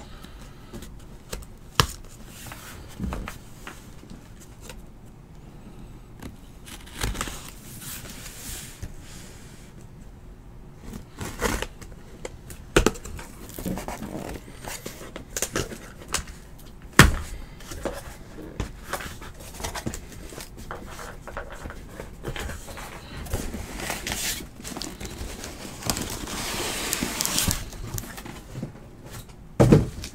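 Scattered handling noises at a desk: clicks, knocks and light scraping, the sharpest knock about seventeen seconds in, then a longer stretch of rustling near the end.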